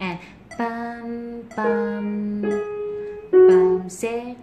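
Samick piano played slowly by a beginner: four single notes struck one after another, each held about a second and fading, the last one the loudest.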